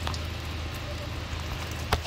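Work under a car at the water pump's coolant drain clip: a steady low hum with a light patter throughout, a faint click at the start and one sharp click just before the end.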